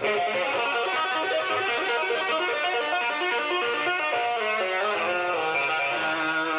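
Frankenstrat-replica electric guitar played with two-handed tapping on the fretboard: fast, continuous runs of notes, settling on a longer held note near the end.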